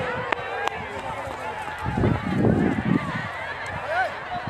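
Several people shouting and calling out at a distance, their voices overlapping. A low rumble of phone handling and wind on the microphone is loudest in the middle, with a couple of sharp clicks early on.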